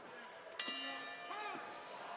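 Boxing ring bell struck once, a bright metallic ring that fades over about a second, marking the end of the round.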